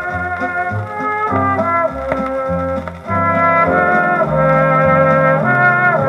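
A 1950s dance orchestra playing an instrumental passage led by trumpets and trombones, with held chords over a moving bass line. It is heard from an old gramophone record played on a turntable.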